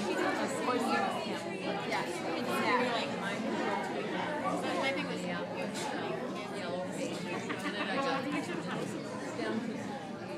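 Indistinct chatter of several people talking at once in a large room.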